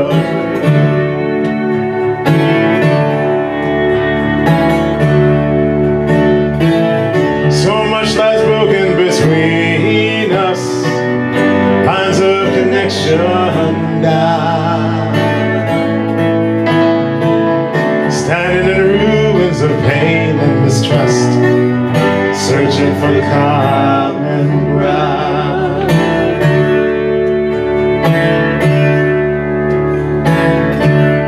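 Live acoustic folk band playing: strummed acoustic guitar, a fiddle carrying wavering vibrato melody lines, and keyboard underneath with a steady bass.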